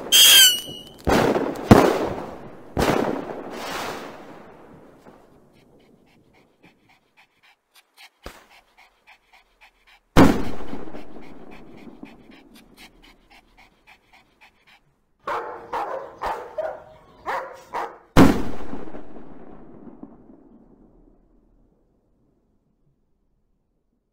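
Fireworks going off: several loud bangs with a falling, wavering whistle at the start, then a single bang about halfway, with faint crackling after it. Near the end, a run of short yelping cries comes just before a last big bang that fades away.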